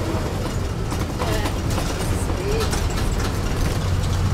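A vehicle's engine running with a steady low hum, heard from inside the cabin.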